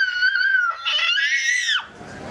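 A young child screaming in two long, high-pitched cries, the second dropping in pitch as it ends.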